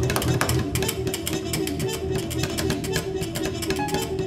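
Live jazz trio music with rapid plucked-string notes over a dense low register.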